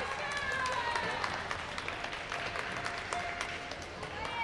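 Indistinct chatter of several voices in a large sports hall, with scattered sharp claps and clicks.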